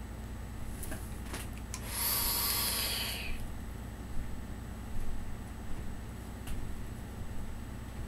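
One long breathy hiss of a vape hit, drawn or blown through a rebuildable atomizer with its airflow wide open, about two seconds in and lasting just over a second. Under it runs a steady low fan hum, with a few faint clicks and knocks.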